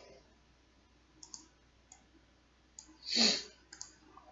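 A few soft, scattered computer mouse clicks as segments are marked in imaging software on a computer. One louder, brief noise comes about three seconds in.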